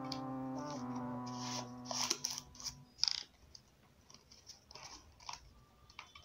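A crumpled paper banknote crinkling and rustling in short, scattered crackles as it is handled and pressed in a hair straightener, with a few small clicks. For the first couple of seconds a low, steady held tone runs underneath.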